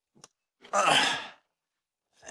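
A man's sigh: one breathy exhale lasting under a second, with a faint short click just before it.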